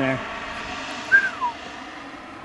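Swiwin 80-newton model jet turbine running at full throttle as the jet flies overhead, a steady distant rush. About a second in, one short call falls in pitch.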